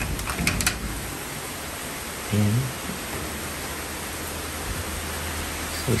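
Heavy typhoon rain falling, a steady hiss, with a few short ticks in the first second.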